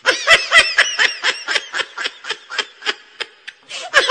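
High-pitched snickering laughter: a quick run of short "ha" pulses that starts loud and slows and fades toward the end.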